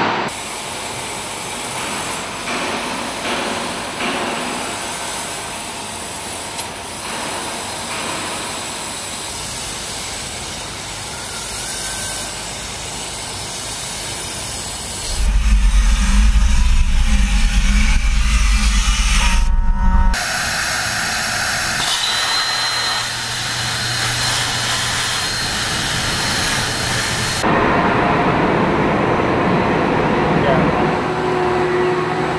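Car-factory paint-shop noise: a steady rush of air and machinery that changes abruptly with each cut. About halfway through it turns much louder and deeper for about five seconds, and afterwards a steady high whine runs under the noise.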